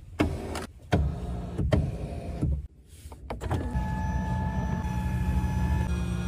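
Power seat adjustment motor in a HiPhi X: a few clicks and knocks as the seat switch is worked, then, a little past halfway, a steady electric motor hum with a thin whine as the seat travels.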